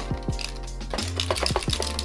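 A VHS cassette being shaken or tilted, a loose broken plastic piece rattling inside its shell in a quick series of small clicks. Background music plays underneath.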